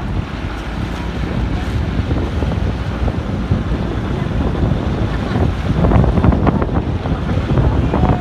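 Steady low rumbling wind noise on the microphone of a moving vehicle in rain. It swells with a burst of crackling about six seconds in.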